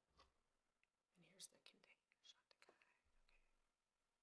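Near silence: room tone, with a few faint soft clicks and a brief faint murmur of a voice a little over a second in.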